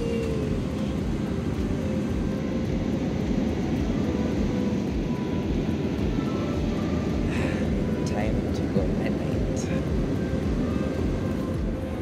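Steady low rumble of jet airliner cabin noise in flight, with a faint steady hum on top. Faint voices come and go in the background.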